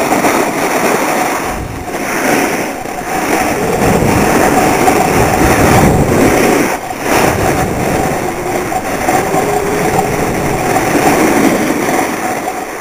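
Loud, steady rush of wind on the microphone mixed with the scrape of edges sliding fast over packed snow down a slope. It dips briefly twice, about two seconds in and again near seven seconds.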